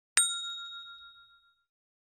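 A single bell 'ding' sound effect marking a tap on a notification-bell icon. One bright strike comes a fraction of a second in, then rings on in two clear tones and fades out over about a second and a half.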